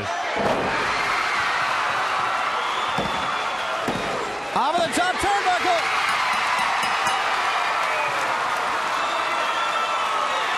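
A wrestler's body hitting the ring canvas with a heavy thud about half a second in, then two more thuds about three and four seconds in, over steady arena crowd noise. Shouts come up from the crowd around five seconds in.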